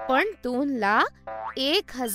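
Voice narrating over soft, steady background music.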